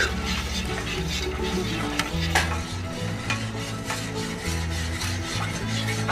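A spoon stirring dissolving gelatin in a saucepan, a steady scraping swish with a few sharp clicks of the spoon against the pan, over background music with a low bass line.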